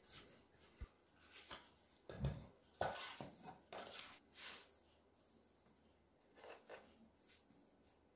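Faint kitchen handling sounds: a lump of soft bread dough coming out of a glass bowl onto a flour-dusted wooden board, a dull thud about two seconds in among light rustles and a small click, then quiet hand movements on the board.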